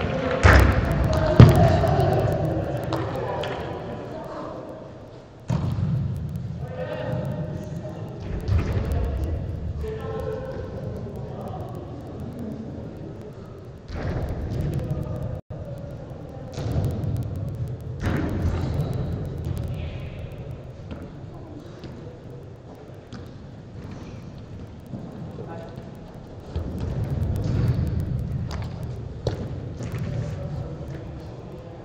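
Indoor five-a-side football in a large hall: ball kicks and thuds, the loudest about a second and a half in, with players shouting and calling to each other.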